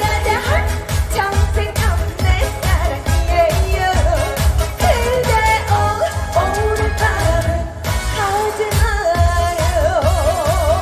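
A woman singing a Korean pop song live into a handheld microphone, over accompaniment with a steady pounding bass beat; near the end she holds a long note with vibrato.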